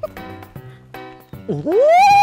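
Background music with a steady beat. About one and a half seconds in, a loud, high, drawn-out cry rises steeply in pitch and holds, then begins to fall.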